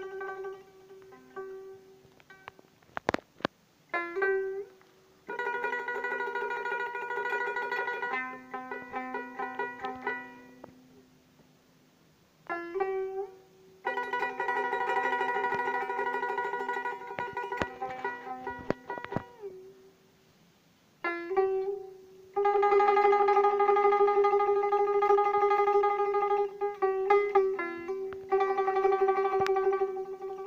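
Solo dotara, the Bengali long-necked plucked folk lute, playing a melody: phrases of plucked notes, with longer stretches of notes held by rapid re-plucking. The phrases are broken by two short pauses.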